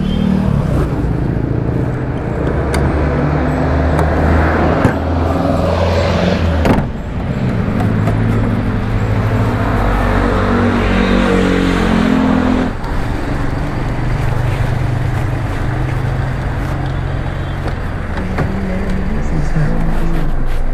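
A car engine running steadily, its hum shifting in pitch now and then, with a couple of sharp metal knocks about five and seven seconds in as a steel double gate is pulled shut.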